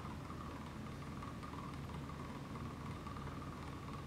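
Faint steady background hum and hiss with a thin, faint whine running through it, and no distinct events.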